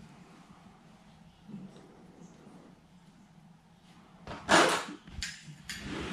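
Acrylic cupping cups and their suction pump being handled: after a few quiet seconds, one loud short rasp a little past four seconds in, then two shorter ones.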